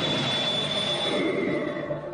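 A loud, steady rushing whoosh with a thin high ringing tone that steps down in pitch about halfway through, a film sound effect.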